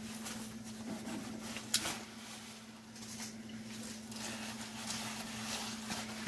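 Fabric of a deployed airbag rustling as it is handled and pulled apart, with a few small clicks, the sharpest about two seconds in, over a steady low hum.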